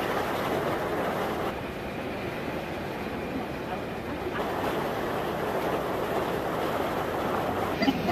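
Water rushing steadily over rock rapids: a dense, even noise that steps slightly in level about one and a half and about four seconds in.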